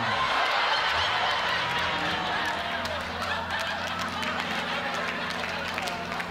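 Studio audience laughing, over a steady low hum.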